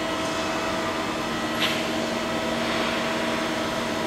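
Steady machine hum with several held tones, from a Yu Shine VL-1600ATC vertical machining center standing powered up. A lower tone joins about a second in, and there is a single short tick near the middle.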